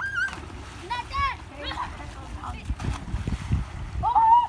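Children's high-pitched shouts, near the start and about a second in, over splashing as boys slide down a mud bank into muddy water and swim.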